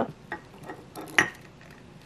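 A few light clinks and taps of glass, the sharpest just past the middle, as a small 50 ml soju glass is handled against a wide-mouthed glass jar.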